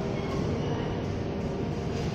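Steady low rumble of vehicle or machinery noise, with a faint steady hum above it.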